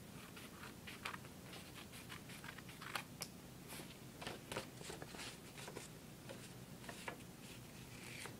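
Scissors snipping through folded construction paper as the leftover edges are trimmed off: a faint, irregular run of short snips mixed with light paper rustling.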